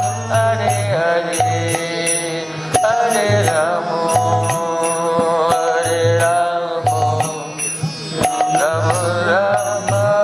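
A man's voice singing a devotional kirtan chant, the melody gliding and held, over a steady percussion beat and a recurring low note.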